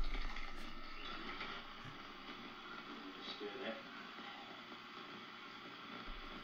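Faint scraping of a plastic spoon stirring powdered material in a plastic cup, over the hiss of an old video recording.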